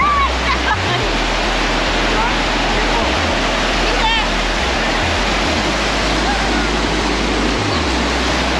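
Water of a shallow rock cascade rushing steadily over sloping stone, with people in it. Voices call out faintly over the water noise, near the start and about four seconds in.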